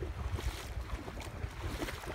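Wind buffeting the microphone, a low fluctuating rumble, over a faint wash of shallow water.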